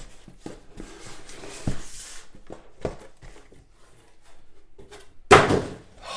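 Cardboard hobby boxes being lifted out of a cardboard shipping case and set down in stacks, with rustling and light knocks of boxes against cardboard and the table, and one louder thump about five seconds in.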